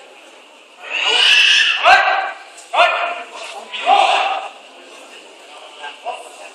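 Loud shouted calls as a Kyokushin karate bout gets under way: one long shout, then three shorter ones about a second apart. A sharp knock comes near the two-second mark.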